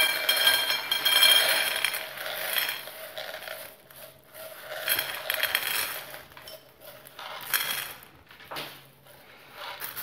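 Dried chickpeas pouring and rattling out of a glass baking dish into a bowl. The pour is steady for the first few seconds, then comes in shorter bursts as the dish is tipped again and the last chickpeas are scooped out by hand.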